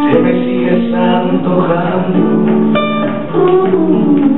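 A man singing a slow song live, accompanying himself on acoustic guitar.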